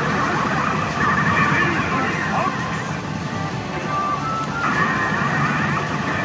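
Pachinko machine in its RUSH bonus mode playing game music layered with electronic sound effects.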